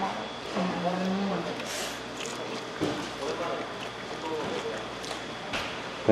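Quiet eating at a table: a short hummed "mm" about half a second in, a few faint clicks of chopsticks and tableware, and low background voices.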